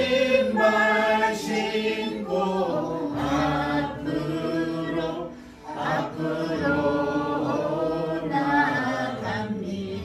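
Slow Korean gospel hymn sung in long, held phrases, with a short breath-like pause about five and a half seconds in.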